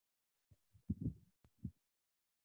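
A few low, muffled thumps and bumps on a headset microphone, like the mic or its cable being handled, starting about half a second in after dead silence.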